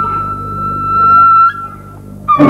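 Banhu, a bowed two-string fiddle with a coconut-shell body, holding one long high note. The note swells in loudness, then drops back about one and a half seconds in and fades, over a quiet string accompaniment.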